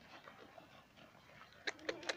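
A herd of goats moving on a dirt track: faint shuffling, then a few sharp clicks and a short low animal call near the end.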